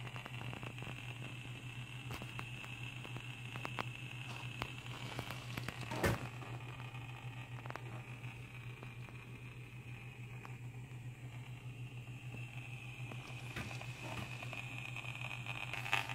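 Handheld high-frequency (RF) meter's loudspeaker giving its audio signal for radio-frequency radiation: a steady hum and a higher tone, grainy with many small crackling clicks. The higher tone is weaker through the middle and comes back near the end. A single knock about six seconds in.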